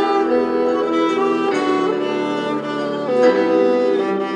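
Solo violin with bird's-eye maple sides and back, bowed in slow, sustained notes that change about every second and a half.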